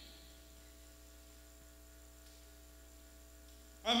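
Faint, steady electrical mains hum, several steady tones held level, until a man's voice comes in just before the end.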